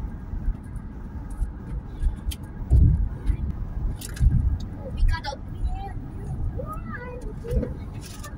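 Road noise inside a car cruising on a highway: a steady low rumble of tyres and engine, with a couple of heavier low thumps about three and four seconds in.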